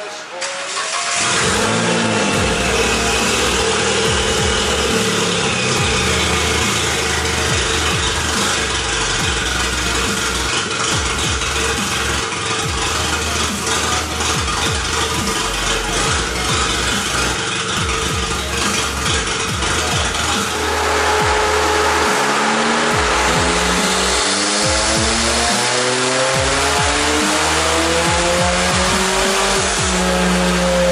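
Turbocharged Toyota 2NR-VE 1.5-litre four-cylinder in an Avanza running hard on a chassis dyno through an open downpipe with no exhaust fitted, loud and raspy; about two-thirds of the way in the engine note climbs in rising sweeps as the revs build.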